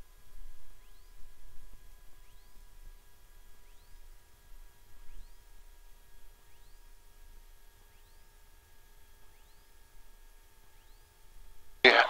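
The 1956 Cessna 172's six-cylinder Continental O-300 engine idling while the plane rolls on the runway after losing power. It is heard only faintly, as a low rumble under a few thin, steady whining tones.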